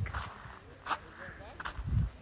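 Faint background chatter of voices, with a sharp tap about a second in and a low thump just before the end.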